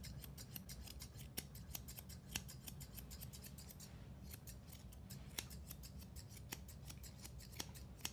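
Eight-and-a-half-inch Monk straight grooming shears snipping through a Goldendoodle's coat: a quick, uneven run of faint, crisp snips, several a second.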